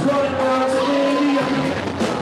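A rock band playing live, loud, with held notes over the band's steady sound.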